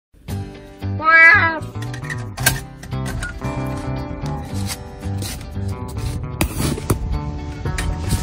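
An elderly cat meowing once, loudly, about a second in, the call rising and then falling in pitch, over background music.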